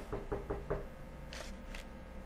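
Five quick knocks on a hard surface, about five a second, within the first second, followed by two short hissing sounds.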